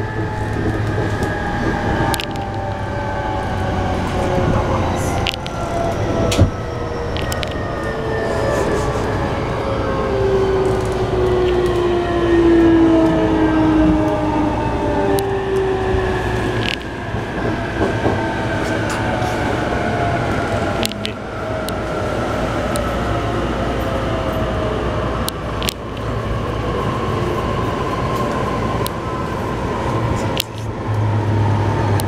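Interior running sound of an E233 series 3000 electric train: the traction motor whine sinks slowly in pitch as the train slows, over a steady low rumble with occasional clicks from the wheels and track.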